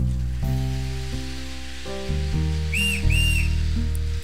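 Two short, high toots of a steam-train whistle about three seconds in, over background music of slow held chords and a steady hiss.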